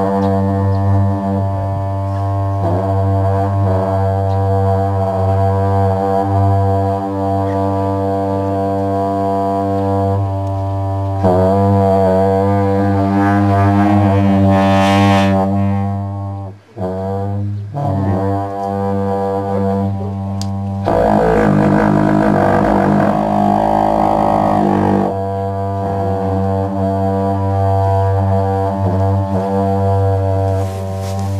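A pair of dungchen, long Tibetan monastic horns, sounding a sustained low drone rich in overtones, the upper tones wavering and bending as the players shape the melody. The sound breaks off briefly a little past halfway, then resumes, rougher and fuller for a few seconds before settling back into the steady drone.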